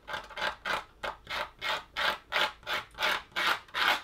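Craft knife blade scratching short horizontal strokes into dry watercolour paper, about three or four quick scrapes a second. It is cutting into the paper's surface to lift out white highlights as sparkle on painted water.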